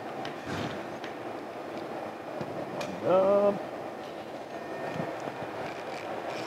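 Steady low background rumble with a few faint clicks, and a brief voiced sound about three seconds in.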